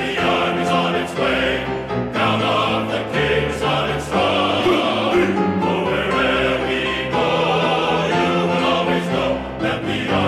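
A choir singing sustained chords, the notes changing every second or so with brief breaks between phrases.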